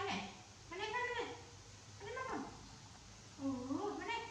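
A baby macaque calling: four separate whiny coos, each under a second, some gliding down in pitch and the last one rising.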